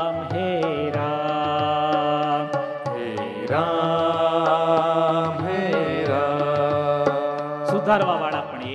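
A man singing a Hindi devotional bhajan in long held notes that bend in pitch, with a steady low accompaniment and light percussive ticks. The singing breaks briefly around the middle and then resumes.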